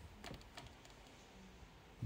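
Near silence with a few faint, light clicks of tarot cards being handled on a table, mostly in the first half.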